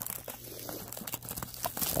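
Clear plastic shrink-wrap being torn open and peeled off a cardboard trading-card box, a continuous run of crinkling and crackling.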